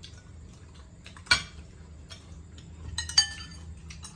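Metal spoons clinking and tapping against glass bowls and plates while eating: small taps throughout, a sharp clink about a second in, and a quick run of ringing clinks near the end.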